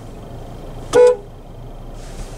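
One short toot of a 2022 Nissan Qashqai's horn about a second in, heard from inside the closed cabin.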